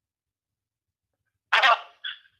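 A single short burst of a person's voice, starting about a second and a half in and dying away quickly.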